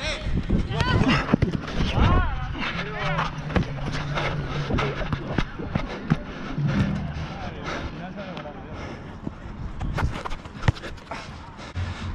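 Players calling and shouting to each other during a small-sided football game on artificial turf, loudest in the first few seconds. Scattered short knocks of running feet and the ball being kicked, the sharpest about ten and a half seconds in.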